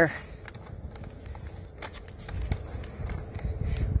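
Dryer exhaust air blowing out of an exterior louvered vent hood and buffeting the microphone, a low rumble that grows in the second half, with a few light clicks from the plastic louver flaps as lint is picked from them. The steady flow is the sign of good airflow through the freshly cleaned duct.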